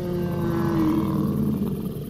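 A dinosaur roar sound effect: one long, deep roar that falls slightly in pitch and slowly fades out.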